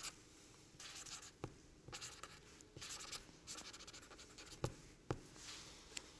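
A pen signing a paper document: a run of short, scratchy strokes of the pen on paper, with a few sharp ticks in between.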